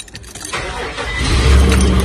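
Nissan Xterra engine starting on the first turn of the key: the starter cranks about half a second in, the engine catches within a second, then settles into a steady idle.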